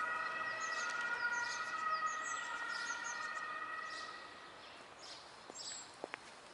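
A distant, steady high-pitched whine of several tones together, fading out after about four seconds, with small birds chirping over it.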